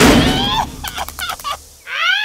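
Cartoon creature voices squawking, with a short run of quick clicks in the middle and a rising call near the end.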